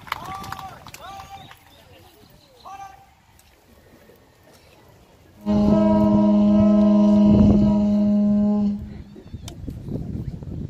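A conch shell (pū) blown in one long, steady note lasting about three seconds, starting about halfway through. Faint crowd chatter comes before it.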